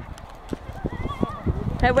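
A few irregular dull thumps and crunches of boots and a snowboard shifting in packed snow, then a voice calls "Hey" near the end.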